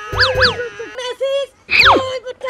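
Edited-in cartoon comedy sound effects: two quick chirps that each rise and fall in pitch, then a long glide falling steeply in pitch near the end.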